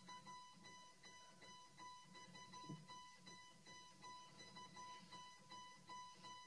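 Near silence with a faint, rapidly repeating high electronic beep, like a quiet alarm or monitor tone in the film's soundtrack.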